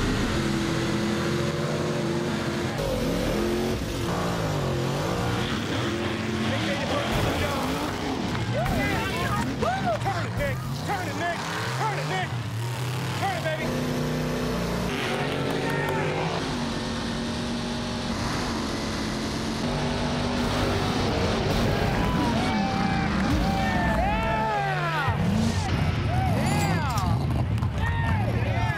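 Big-block Chevrolet V8 engines of two mega trucks racing at full throttle, the engine pitch rising and falling again and again through the run.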